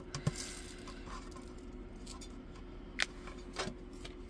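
Resin diamond-painting drills rattling and clicking in their plastic storage container as it is handled, with a few sharp clicks, the loudest about three seconds in.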